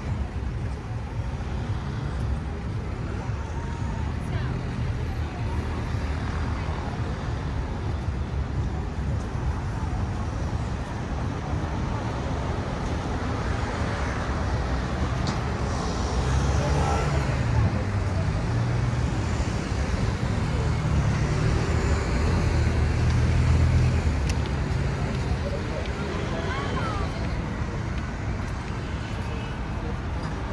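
Steady rumble of road traffic, with people talking nearby. The traffic gets louder for several seconds past the middle.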